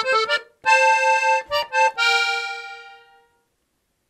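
Gabbanelli button accordion in F (FBbEb) playing a short phrase of two-note chords on the treble side, ending on a held chord that fades out a little after three seconds in.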